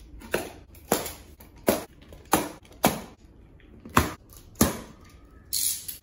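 Tensioned plastic packing straps on a cardboard box snapping one after another as they are cut with a utility knife: about seven sharp snaps, then a longer scraping sound near the end.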